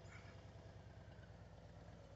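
Faint, steady low rumble of a Harley-Davidson touring motorcycle's V-twin engine running near idle as the bike is ridden slowly through a tight turn.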